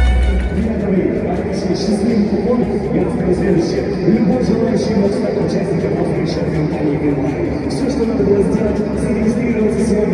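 Indistinct voices over background music, the clearer tune fading out within the first second.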